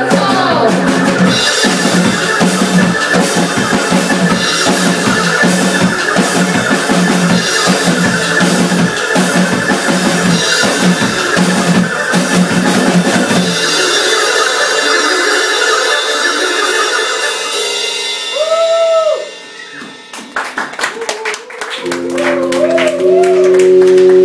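Live keyboard and drum-kit music from a two-piece band. Around two-thirds of the way in the low end drops out and the music breaks off briefly with a couple of bending keyboard notes. Scattered drum hits follow, then a new stepped keyboard pattern starts near the end.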